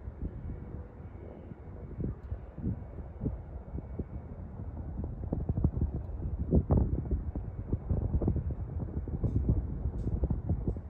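Wind buffeting the microphone in irregular low thumps over a steady low rumble, growing stronger through the second half.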